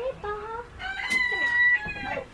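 Rooster crowing: a short note early on, then one long held note that breaks off just before the end.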